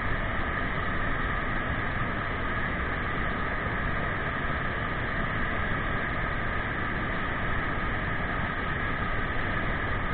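Waterfall pouring into a churning plunge pool, a steady, unbroken rush of water.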